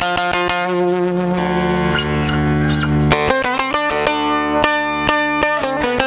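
Bağlama (Turkish long-necked saz) playing an instrumental folk introduction with fast plectrum strokes. About half a second in it slows to held, ringing notes, then goes back to rapid picking after about three seconds. A brief high gliding tone rises and falls about two seconds in.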